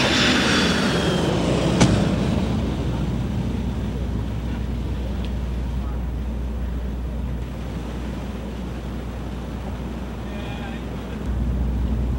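Airport traffic noise: a jet aircraft's high engine noise fades over the first two seconds, with a sharp click about two seconds in. A low steady rumble of car engines follows.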